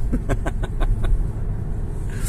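Low, steady road and tyre rumble inside the cabin of an all-electric MG5 estate accelerating hard, with no engine note. A quick run of short sharp sounds comes in the first second.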